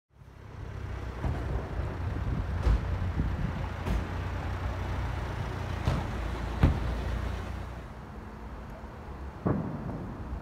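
Street ambience with a steady low rumble of road traffic that eases off in the second half, broken by about half a dozen sharp knocks.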